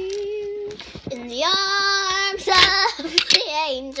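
A girl singing wordless held notes, a made-up waiting tune: one steady note, a short break, a louder long note in the middle, then notes that slide down near the end.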